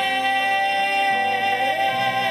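A male voice holding one long sung note over grand piano accompaniment in a live pop ballad.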